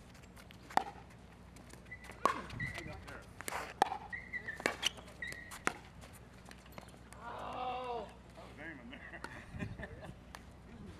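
Pickleball rally: about six sharp pops of paddles striking the plastic ball, roughly a second apart, with short high squeaks of shoes on the court between them. A player calls out briefly near the end as the point finishes.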